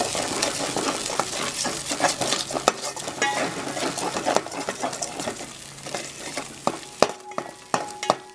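Curry-leaf, green-chilli and cashew paste sizzling in oil in a steel pan while a metal spoon stirs it, scraping and clicking against the pan. About seven seconds in the sizzle drops away and a few sharper spoon taps stand out.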